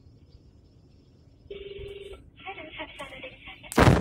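A telephone ringing once, a short trilling ring about a second and a half in, in broadcast radio audio. Near the end comes a loud, sudden burst of noise.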